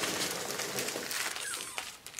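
Plastic packing wrap rustling and crinkling as it is pulled off a crystal by hand, trailing off near the end.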